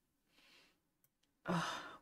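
A woman's exasperated "ugh", a voiced groan-sigh starting about one and a half seconds in and trailing off.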